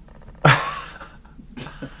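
A man laughing in sharp, breathy bursts: a loud laughing exhale about half a second in, and another near the end.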